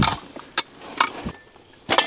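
A few sharp knocks and clinks, about four in two seconds, of a small steel shovel and loose stones against rock while a nodule is dug out of stony ground.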